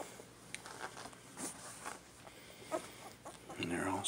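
Two-week-old toy poodle puppies making a few short, faint squeaks, scattered through the moment, with a man starting to speak near the end.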